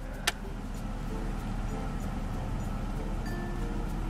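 Tissue paper rustling as a gift is unwrapped, over a low steady hum, with one sharp click about a third of a second in and soft chime-like notes here and there.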